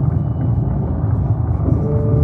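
Steady deep rumbling drone of a show soundtrack, with a thin steady tone coming in near the end.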